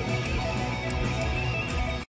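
Live electric guitar improvising a lead over a band with bass and drums, playing quick licks that stay within one pentatonic box position on the neck.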